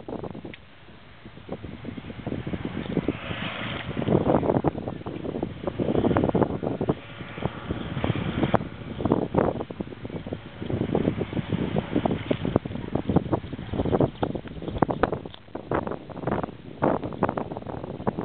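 Wind buffeting the microphone in uneven gusts, quiet at first and then surging and dropping irregularly.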